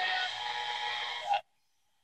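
Zenith Trans-Oceanic H500 tube radio giving out a hiss of static with faint whistling tones as it is tuned between stations. The sound cuts off suddenly about a second and a half in.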